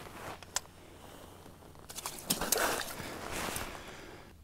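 Close handling noise: jacket fabric rustling with a few light clicks and knocks, busier from about halfway through.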